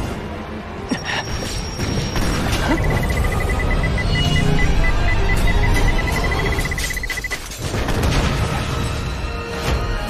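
Dramatic background music with battle sound effects laid over it: several sharp impacts and booms. A high pulsing tone runs from about three seconds in until about seven.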